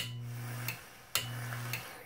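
A homemade 120-volt AC e-cig fired twice. Each time its 24-volt AC relay clicks on, a low mains hum runs for under a second, and the relay clicks off again. Each firing has a faint sizzle of the coil vaporising the e-liquid.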